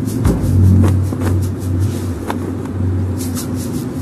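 A low, steady rumbling hum that swells about half a second in, with a few faint ticks.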